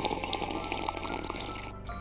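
A person sipping a hot latte from a lidded paper cup, with small wet slurping sounds over background music. The sipping stops shortly before the end.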